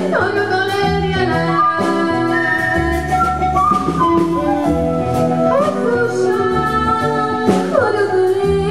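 Live band music: a woman singing into a microphone over electric guitar, bass guitar and drum kit, with the melody sliding up and down in pitch a few times.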